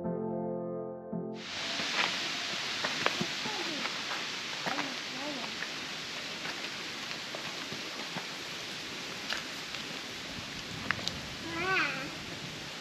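Background music that stops about a second in, followed by a steady outdoor hiss with light scattered footsteps on a dirt trail. A child's voice is heard briefly near the end.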